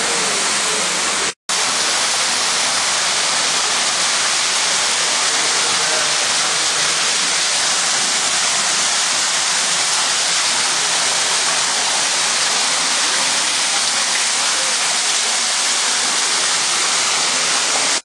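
Steady rush of falling water from a garden waterfall feature, broken once by a brief dropout about a second and a half in.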